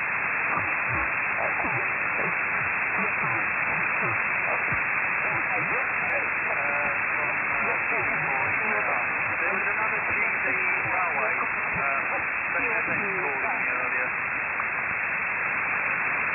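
Shortwave single-sideband receiver audio on the 40 m amateur band: steady hiss that stops sharply above about 2.8 kHz, with faint, unintelligible voices buried in the noise.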